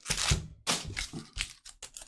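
Cardboard booster box and foil booster pack wrappers being handled: a couple of short rustles, then a quick run of small sharp clicks and crinkles in the second half.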